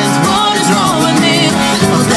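Acoustic guitar strummed with a sung vocal melody over it: a live acoustic pop cover.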